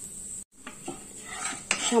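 Whole cumin seeds sizzling in hot oil in a non-stick kadai, with a wooden spatula knocking against the pan a few times in the second half as stirring starts. The sound cuts out briefly just before halfway.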